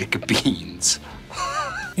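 Dialogue from a TV sitcom clip: a few short speech sounds, then a brief high, wavering vocal sound in the second half.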